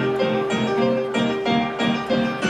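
Digital stage piano playing an instrumental groove: chords struck in a steady rhythm, about two to three a second, over a held note.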